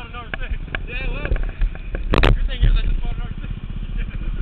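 Indistinct voices over a steady low rumble, with one loud sharp knock about two seconds in as the helmet-mounted camera is moved.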